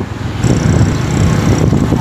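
Wind rushing over the microphone of a moving vehicle, with the vehicle's engine and road rumble running underneath; the rumble steps up louder about half a second in.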